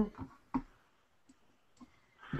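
A few separate clicks: one sharp click about half a second in, then two fainter ones, on a quiet open line.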